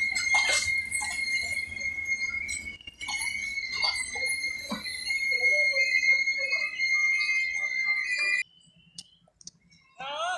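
LHB passenger coaches rolling slowly past with a steady, high-pitched metallic squeal, typical of disc brakes as the train slows, and a few scattered clicks from the wheels. The sound cuts off suddenly after about eight seconds.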